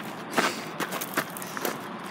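Footsteps on gravel: a handful of short, irregular steps with light knocks.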